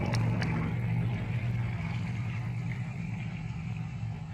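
A motor running steadily with a low, even hum, with a few short sharp clicks about half a second in.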